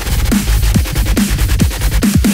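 Electronic dubstep/drumstep music with heavy deep bass, a fast run of drum hits and short synth stabs that fall in pitch several times a second.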